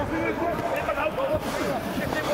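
Rugby players' voices calling and shouting over one another as a lineout turns into a driving maul, heard from pitch level in a nearly empty stadium.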